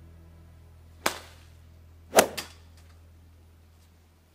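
Golf clubs striking balls off hitting mats: a sharp crack about a second in, then a louder one just after two seconds followed quickly by a smaller smack. A steady low hum lies underneath and fades near the end.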